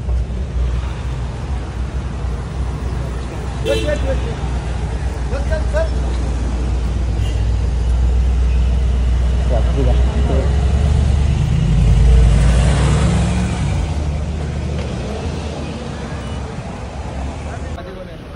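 Cars of a convoy driving slowly past at close range, a continuous low engine and road rumble that swells to its loudest as an SUV passes about twelve seconds in, with people calling out now and then.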